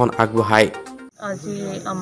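A voice, then after a cut a steady high-pitched insect chirring that goes on behind a second voice.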